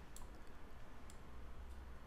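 A few faint clicks of a computer mouse over a low, steady hum.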